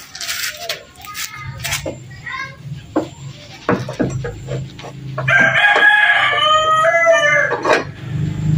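A rooster crowing once, a long call starting about five seconds in and the loudest sound here. Before it, scattered short metal clinks and knocks of hand tools on the van's front wheel hub.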